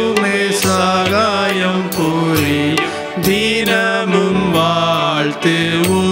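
A devotional hymn: a voice singing a melody over instrumental accompaniment, with a held note underneath and a regular beat.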